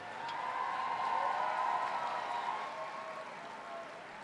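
Crowd applauding and cheering, swelling about a second in and fading toward the end, with long held cheers above the clapping.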